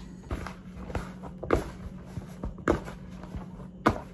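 Hands kneading soft bread dough in a large plastic bowl: irregular soft knocks and squelches, with three stronger thumps a little over a second apart in the second half, over a steady low hum.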